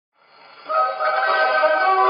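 Opening of a 1930 dance-band fox trot played from a gramophone record: surface noise fades in, then the band comes in with loud sustained chords just under a second in, with the narrow, muffled treble of an early electrical recording.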